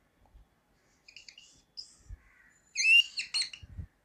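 Whiteboard marker squeaking against the board as it writes in short strokes. The squeaks are high-pitched and short, with the loudest cluster about three seconds in.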